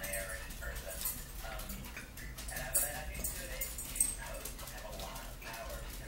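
A dog whining on and off, with sharp clicks of forks on plates, the loudest about three and four seconds in.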